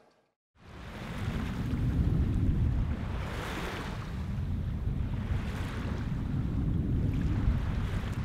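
A steady rushing noise with a heavy low rumble, like surf or wind, starting about half a second in after a brief silence and swelling a little around three and a half and five and a half seconds in.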